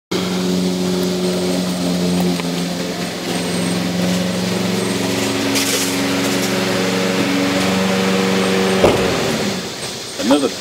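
MTD 38 lawn tractor engine running steadily, then a sharp click a little before the end as the engine stops.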